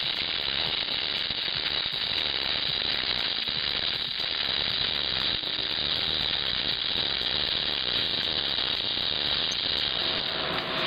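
Electric arc welding: the arc running steadily through the whole weld pass with an even crackle.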